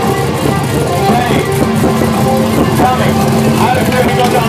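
Drag car's Dart-block 363 cubic-inch V8 idling steadily, mixed with people talking and music.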